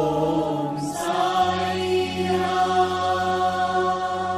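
Devotional Hindu mantra chanting set to music, the voices holding long steady notes and moving to a new note about a second in.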